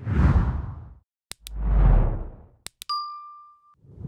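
Subscribe-button animation sound effects: two whooshes, each starting with a sharp click, then a quick double click and a single ding that holds under a second and cuts off. Another whoosh begins near the end.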